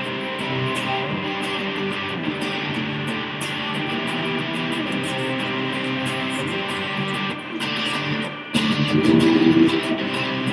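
Electric guitar played through an amplifier in an instrumental passage with no singing. The playing breaks off briefly near the end, then comes back louder.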